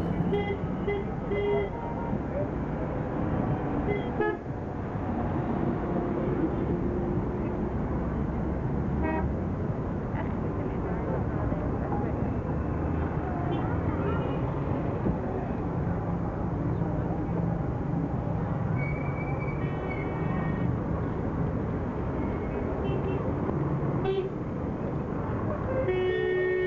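Busy city street ambience: a steady din of traffic and many voices, with car horns tooting now and then in short blasts and one held for about a second about three-quarters of the way through.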